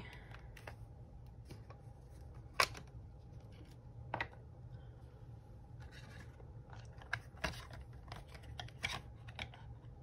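Scattered small clicks and knocks of craft supplies being handled on a work table, including a stamp ink pad's plastic lid being closed, over a steady low hum. The sharpest click comes about two and a half seconds in.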